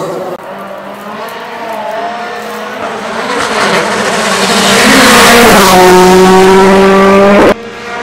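Volkswagen Polo R WRC rally car's 1.6-litre turbocharged four-cylinder engine approaching, growing louder over the first few seconds, then held in a steady high-revving note as it comes close. The sound cuts off suddenly near the end.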